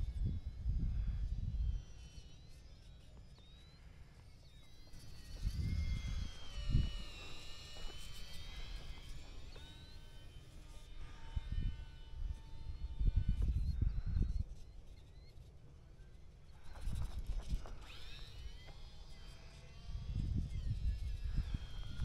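Wind buffeting the microphone in low gusts every few seconds. Between the gusts there is a faint, high whine that rises and falls: the small electric motors of an E-Flite UMX Twin Otter flying some distance away.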